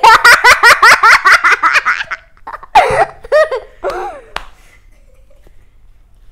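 A boy laughing: a quick run of loud laughs for about two seconds, then a few shorter laughing sounds that die away a little past the middle.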